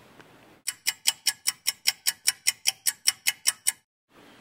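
A rapid, even run of sharp ticks, about five a second and some sixteen in all, starting a little under a second in and cutting off abruptly near the end, as an inserted sound effect over a pause in the dialogue.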